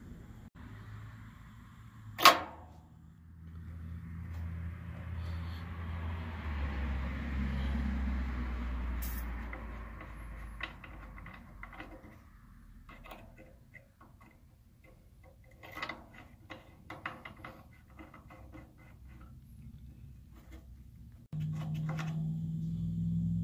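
A Schrader valve core removal tool working on an AC service valve. A sharp click as its lever is opened is followed by a hiss of refrigerant that swells and fades over several seconds. Then come small scattered metal clicks and ticks as the tool is pushed in and turned clockwise to thread the new valve core back into the king valve.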